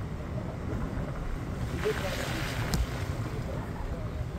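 A vehicle driving along a mountain road: a steady low rumble of engine and tyres, with a rush of hissing noise swelling for about a second and a half in the middle and one short sharp click near the end of it.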